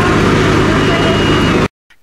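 Fire engine running steadily, loud and even, cutting off abruptly near the end.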